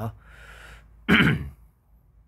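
A person clears their throat once, a short loud rasp about a second in.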